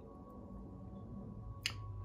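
Quiet room tone with a faint steady hum, broken by one short sharp click about one and a half seconds in.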